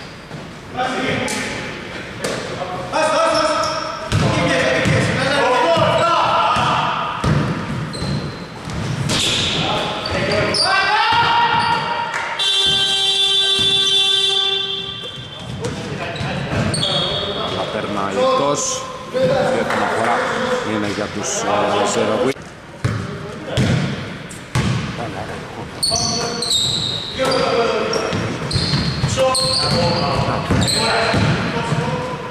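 A basketball bouncing on a wooden gym floor amid players' voices, all echoing in a large hall. About halfway through, a steady buzzer tone sounds for about two and a half seconds.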